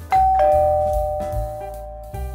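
A two-note ding-dong chime sound effect, a higher note then a lower one, struck about a third of a second apart and ringing out as they fade. It plays over background music with a steady beat.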